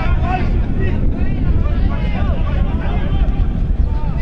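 Wind buffeting the camera microphone with a heavy low rumble, under players' voices shouting and calling out during a football match.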